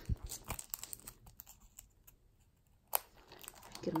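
Clear plastic sleeve around a sheet of planner stickers crinkling and crackling as it is handled and opened, a run of small sharp crackles followed by a quieter moment and a single sharp snap about three seconds in.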